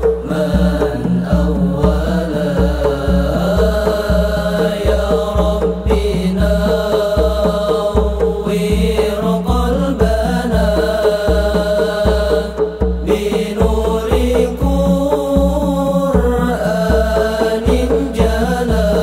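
Sholawat devotional singing accompanied by hadrah rebana frame drums, with a deep drum pulsing a steady beat about twice a second.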